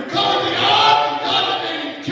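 A man's voice singing into a microphone, with long held notes that bend in pitch and a short break between phrases near the end.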